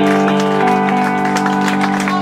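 A live blues band holds a sustained closing chord on an amplified box-bodied electric guitar, with drum strikes over it.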